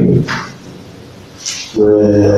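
A man's voice trailing off, then a pause of about a second and a half with two short soft noises, before his voice starts again just before the end.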